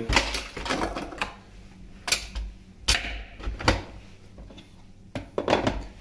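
A Nespresso Vertuo coffee machine being loaded: the pod set in the capsule holder and the lid slammed down hard to puncture it. There are half a dozen sharp plastic knocks and clicks, the loudest a few seconds in.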